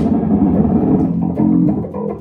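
A jazz quartet playing live, with electric guitar and double bass lines to the fore.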